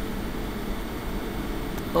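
Steady background noise in a small room: a low hum and hiss, with no distinct events.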